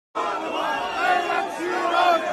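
A dense crowd of fans shouting excitedly at close range, many voices overlapping. It starts abruptly just after the beginning.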